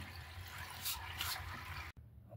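Faint liquid sounds from a rusty pyrite specimen soaking in Iron-Out solution, with two short soft sounds about a second in; it cuts off suddenly just before the end.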